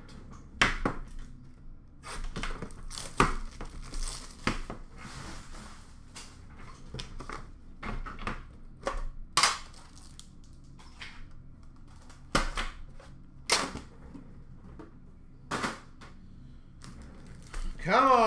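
Hockey-card packs and a metal card tin being handled and opened: foil wrappers crinkling and tearing, with scattered sharp clicks and taps as the tin and card stacks are handled.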